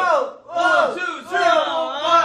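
A group of young men shouting a dance count together in a loud, rhythmic chant, about two counts a second.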